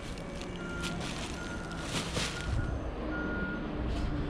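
A vehicle warning beeper giving short beeps of one steady pitch at irregular spacing, over a low mechanical rumble that grows louder in the second half.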